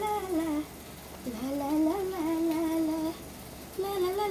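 A woman humming a tune: a short falling phrase, then a longer one that rises and holds a steady note, and another phrase starting near the end.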